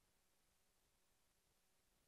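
Near silence: only a faint, steady noise floor with no distinct sound.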